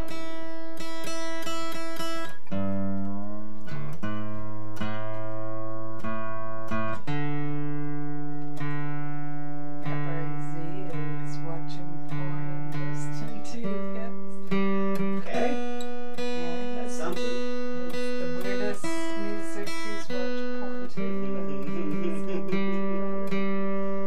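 Acoustic guitar being retuned: single strings are plucked again and again and left to ring while the pegs are turned, so the held notes step to new pitches every few seconds.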